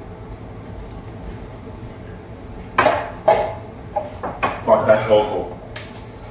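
Bowls and cutlery clinking and knocking on a kitchen counter as they are handled, with sharp knocks about three seconds in and a click near the end. Short wordless voice sounds come in the second half.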